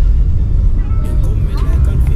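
Loud, uneven low rumble of road and wind noise from a moving car.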